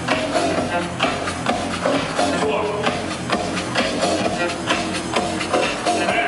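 Electronic dance music from a DJ set with a steady beat of about two strokes a second, played loud over a club sound system.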